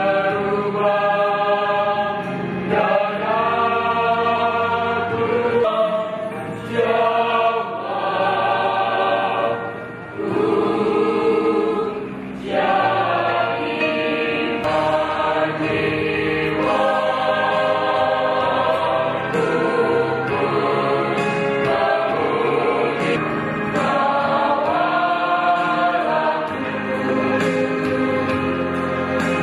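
A mixed church choir of young men and women singing together, holding long notes with brief breaks between phrases.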